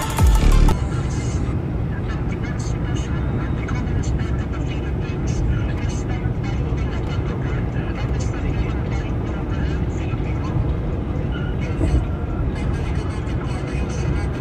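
Electronic music cuts off about a second in, leaving the steady road and engine noise of a car heard from inside the cabin while it drives.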